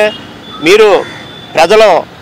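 A man speaking Telugu in two short phrases, with a quiet outdoor background between them.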